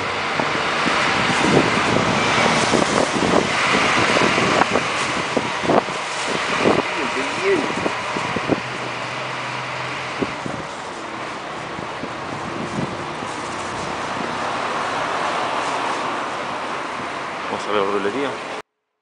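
Street traffic ambience: a continuous rush of passing cars, louder over the first several seconds, with scattered short clicks and knocks.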